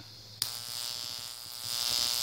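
High-voltage AC arc striking with a sharp snap about half a second in, then buzzing steadily across the gaps between two brass electrodes and a steel ball, growing louder near the end.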